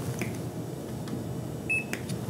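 Handheld barcode scanner giving one short, high beep near the end as it reads the patient's ID wristband, the sign of a successful scan.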